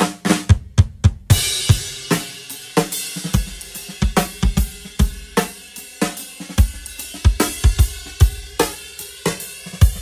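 A drum kit playing a steady groove of kick and snare hits with cymbals: a maple Ludwig kit with a Ludwig Acrolite snare and Zildjian K hi-hats and ride. The drums are tape-flanged, copied onto two tape machines with one reel held back by hand, so a sweeping, swirling tone moves through the cymbal wash from about a second in.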